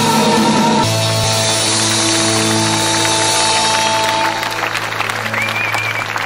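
A live band's final chord held and ringing out as the song ends. Audience applause starts up under it about four seconds in and takes over as the chord fades.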